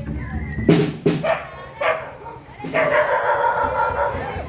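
A dog barking, two sharp barks about a second in, amid children's voices, with a long drawn-out pitched call near the end.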